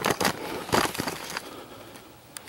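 Camera handling noise: the camera rubbing and scraping against a camouflage jacket as it is swung round, a quick run of rustles in the first second and a half, then quieter.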